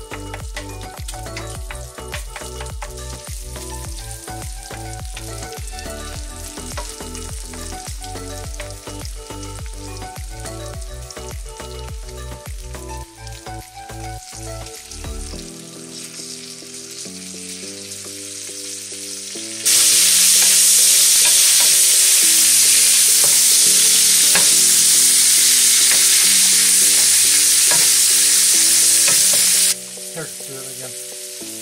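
Pork belly, red curry paste and green beans frying in a hot pan, crackling under background music. About two-thirds of the way in a much louder, steady sizzle starts suddenly and cuts off just before the end.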